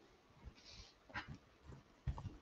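Near silence: quiet room tone with a few faint clicks and soft bumps.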